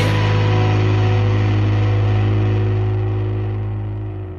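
A pop-punk song ending: the drums stop and the band's last chord rings out on guitars and bass, a strong low note under held higher tones, starting to fade near the end.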